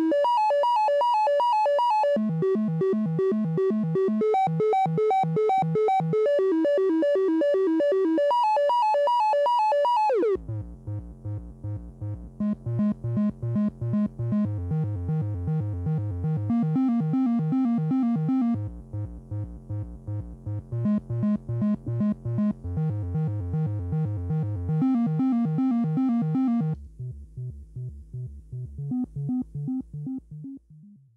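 Tenderfoot Electronics SVF-1 state-variable filter self-oscillating, its resonance playing a stepped note sequence from a quantizer at one volt per octave. In the less polite resonance mode with the drive up, the tone is dirty and rich in overtones. About ten seconds in the pitch swoops down and the notes carry on lower and softer, then thin out and fade near the end.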